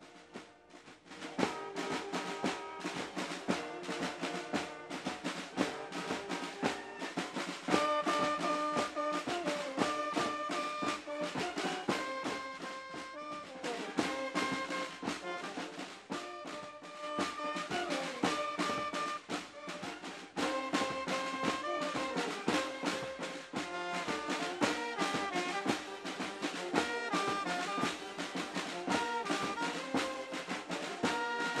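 A marching band playing: snare and bass drums beating a steady march rhythm under a brass melody, coming in about a second and a half in.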